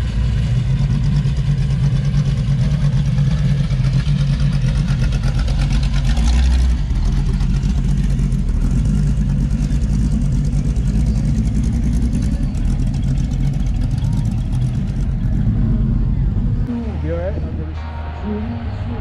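T-bucket hot rod's engine running as it drives slowly across a grass field, with a short rev about six seconds in. The engine note drops near the end.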